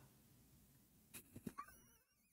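Near silence, with a few faint clicks about a second in and a faint, wavering high-pitched squeak near the end, like the start of a stifled laugh.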